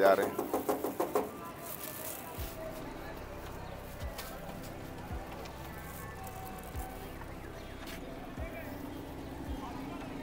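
Hand banging and rattling a closed sheet-metal gate in quick repeated strikes that ring, lasting about a second, then stopping; a few soft low thumps follow.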